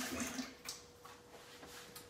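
Water from the kitchen sink tap, faint and soon stopping, then a quiet room with a faint steady hum and a couple of small clicks.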